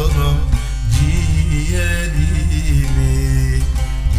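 Instrumental passage of a Turkish folk song: a plucked string melody over sustained bass notes and a steady pulsing beat.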